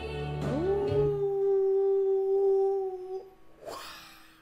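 A sung note in a song: the voice slides up into one long held note, about two and a half seconds long, over soft accompaniment that falls away. The note stops, and a short breathy sound follows near the end.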